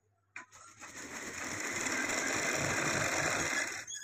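Sewing machine stitching a folded strip of black cloth. A click comes about half a second in, then the machine speeds up to a steady run and stops abruptly near the end.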